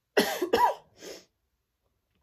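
A woman coughing three times, a quick loud pair followed by a softer third cough.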